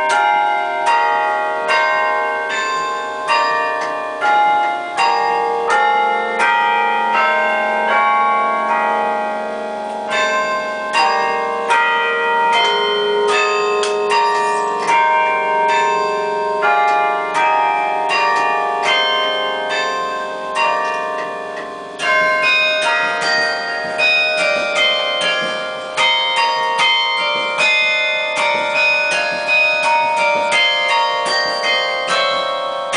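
A carillon played from its baton keyboard: tuned bronze bells struck in a continuous melody with chords, each note ringing on and overlapping the next. About two-thirds of the way through, a strong new phrase starts.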